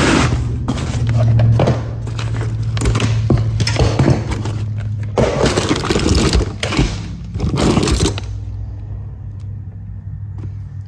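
Hands rummaging through a cardboard box of used bicycle parts: metal derailleurs and cables clattering and scraping, with plastic bags crinkling, in irregular bursts that die down about eight seconds in. A low steady hum runs underneath.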